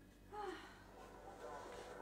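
A short, quiet vocal sound from a person about a third of a second in, against faint room sound.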